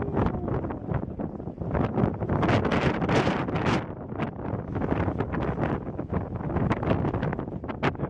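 Wind buffeting the microphone in uneven gusts, a loud rumbling rush that rises and falls.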